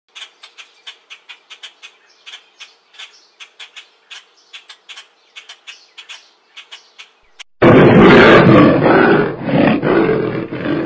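Sound effects of an animated intro: a run of faint, quick clicks, about three or four a second, then about seven and a half seconds in a sudden, very loud, harsh cry that holds for about two seconds and fades.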